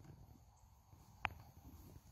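Near silence, broken by a single short, faint click a little over a second in.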